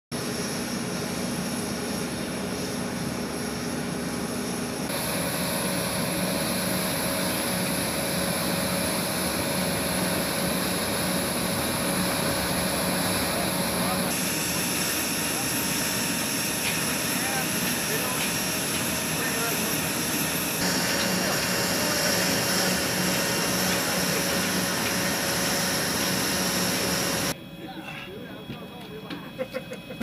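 Steady jet turbine noise on an airfield flight line: a loud rush with high whining tones that shift a few times. Near the end it drops to a quieter steady hum with a few light knocks.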